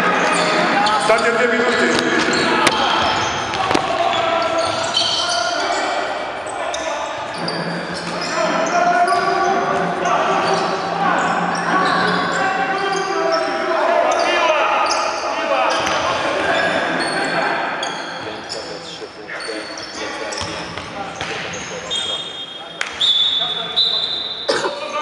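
Basketball game in a large sports hall: a ball bouncing on the hardwood court, with players' and coaches' voices calling out over the echoing room.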